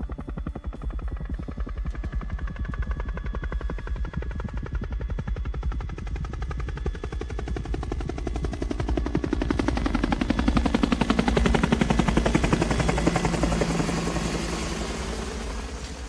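Helicopter rotor chopping steadily. It swells to a close pass about eleven seconds in, its pitch falling as it moves away, and fades toward the end.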